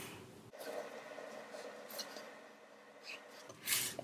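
Pencil drawing a line along a ruler on paper: a faint, steady scratching. Near the end comes a brief, louder rush of noise.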